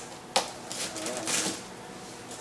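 Hands working at the top of a large cardboard box: a sharp tap or click about a third of a second in, then scraping and rustling of cardboard as the flaps are handled.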